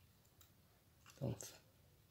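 Faint clicks of a plastic car tailgate handle assembly's parts being moved by hand, then one short spoken word.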